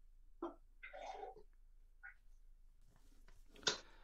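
Faint, sparse sounds from the dartboard room: a couple of soft knocks and a short rustle, then a sharper knock near the end, as of a steel-tip dart striking the board.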